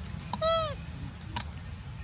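A baby long-tailed macaque gives one short coo about half a second in, rising and then falling in pitch.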